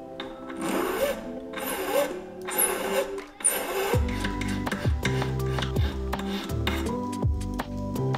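About four strokes of a hand file across the end of an 18-karat yellow gold strip, roughly one a second, in the first half. Background music plays throughout, with a deeper beat coming in about halfway.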